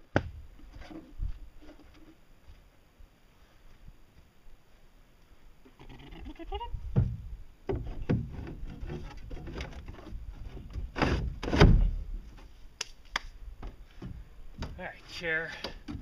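A homemade chair being lifted and set into place on a boat: a run of knocks, scrapes and thumps, the heaviest thump a little past the middle, then a few sharp clicks.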